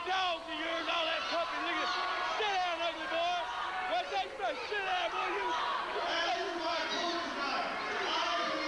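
A man speaking into a handheld microphone over the arena's public-address system, with a murmuring crowd under it.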